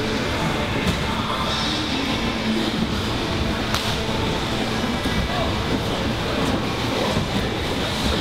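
Steady hubbub of a busy grappling gym: many people's voices and bodies moving on the mats blending into a dense noise, with a couple of sharp slaps, about one second in and again just before four seconds.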